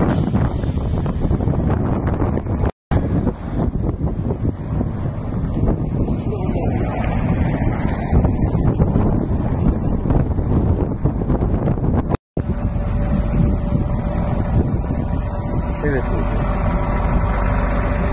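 Wind rumbling on the microphone over vehicle engine noise at a roadside, with voices in the background. The sound drops out completely for a moment twice, about 3 and 12 seconds in, where the footage cuts.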